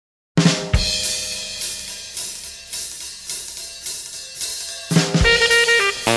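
Soundtrack music starting about a third of a second in with a drum kit intro: a loud crash, then a driving beat of snare and cymbal strikes, with a second big hit near the end where horns come in.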